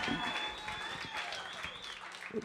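Light applause from a small audience, a scatter of individual hand claps.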